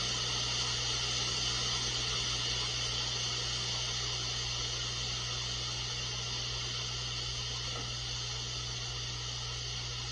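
Steady hiss with a low electrical hum on the mission-control audio feed, unchanging throughout.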